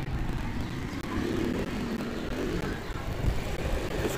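Low, steady rumble of a vehicle engine.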